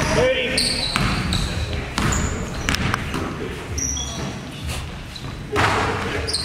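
A basketball bounces on a hardwood gym floor during play, in irregular thuds, with short high sneaker squeaks. The sound echoes in the large gymnasium.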